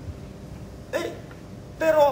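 A man's voice giving two short vocal sounds: a brief "Ei" about a second in and a louder, short cry near the end, with quiet hall room tone between.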